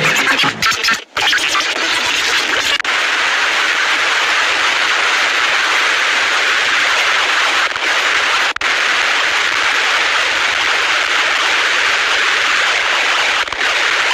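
Loud, harsh, steady static-like noise with no pitch to it, cutting out briefly about a second in, near three seconds and again past eight seconds.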